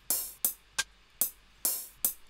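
Hi-hat cymbal samples auditioned one after another in a sample browser: five separate hi-hat hits about every 0.4 s. Some ring on for a moment and others are cut short.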